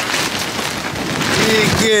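Heavy rain pouring down steadily, a dense even hiss of downpour.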